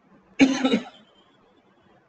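A man's single short cough, a sudden burst of about half a second shortly after the start.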